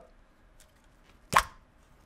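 A single short, sharp pop about halfway through as the peel-off lid comes free from a Freestyle Libre CGM sensor pack's plastic container, with faint rustling of the lid around it.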